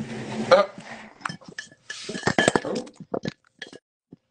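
Clinks, clicks and knocks of objects handled close to a phone microphone, with short stretches of rustling, thinning out near the end.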